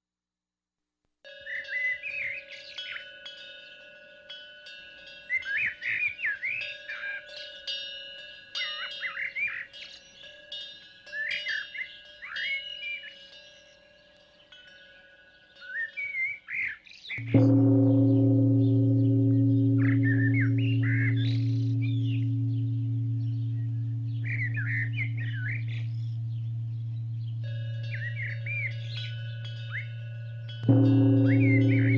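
Birds chirping in short bursts; about 17 seconds in, a deep-toned bell is struck once and rings on, slowly fading, while the birds keep chirping.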